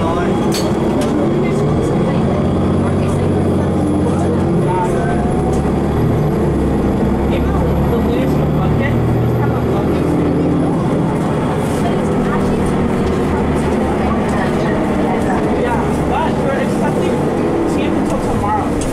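Inside a 2015 Nova Bus LFS city bus pulling away from a stop: the engine note rises about a second in as it accelerates, over steady engine, road and cabin noise.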